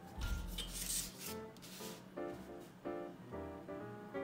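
A pencil and steel ruler rubbing and scraping across foam board in the first second, followed by quiet background music of short plucked notes.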